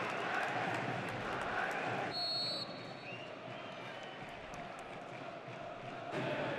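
Football stadium crowd noise: a broad hum of many voices with chanting. About two seconds in comes a short, high referee's whistle blast, after which the crowd is a little quieter.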